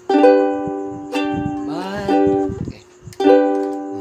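Ukulele strummed three times, each chord left to ring out.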